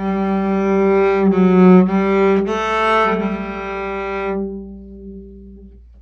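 Acoustic cello bowed solo, playing a short run of sustained notes that change several times in the first three seconds. The bowing then stops and the last low note rings on, fading out near the end.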